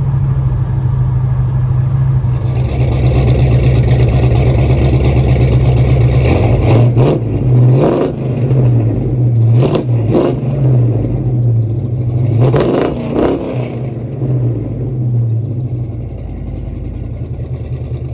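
1970 Chevrolet C-10's engine heard at its exhaust, running steadily and then revved in several quick blips through the middle.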